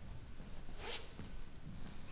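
Soft footsteps and camera-handling noise from someone walking across a wooden floor, with one short scratchy rustle about a second in.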